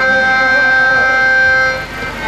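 Harmonium holding a steady chord of reed tones in a qawwali, with no tabla. It fades out just before the end.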